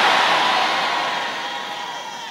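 A large congregation's loud, shouted "Amen" in answer to a call, a roar of many voices that gradually dies away.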